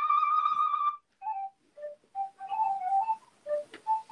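A flute playing: one high note held until about a second in, then, after a short break, short single notes that run into a quick melody near the end.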